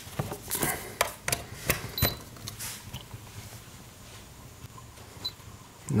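Plastic clicks and knocks of a power plug being handled and pushed into a plug-in wattmeter socket, bunched in the first two seconds, with a short high beep about two seconds in.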